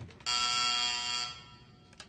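A steady electric buzzing tone, rich in overtones and unchanging in pitch, sounds for about a second and then fades out.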